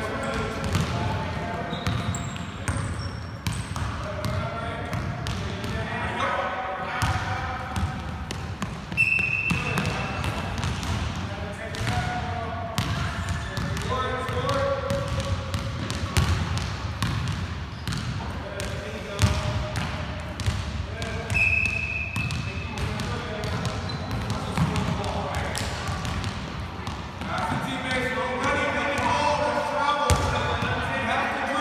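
Several basketballs dribbled on a hardwood gym floor, a rapid, irregular patter of bounces, under indistinct voices. Two short high squeaks cut through, about nine seconds in and again about twenty-one seconds in.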